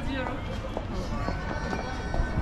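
Pedestrian shopping-street ambience: passers-by talking close by, with footsteps on the pavement.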